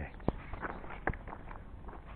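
Footsteps on a hiking trail: two distinct steps, about a third of a second and just over a second in, over faint background noise.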